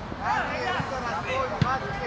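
Shouting voices at a youth football match, with a single short thud about one and a half seconds in.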